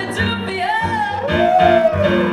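A woman singing live with keyboard accompaniment: her voice glides up and then holds a long arching note, loudest near the end, over sustained keyboard chords.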